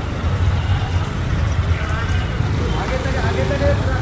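Street traffic, a steady low rumble of engines and motorbikes on the road, with men's voices talking and calling out over it in the second half.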